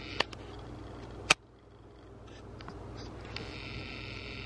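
Indoor room tone, a steady low hum and hiss, broken by a few sharp clicks of the camera being handled. The loudest click comes just over a second in, after which the background briefly drops away before returning.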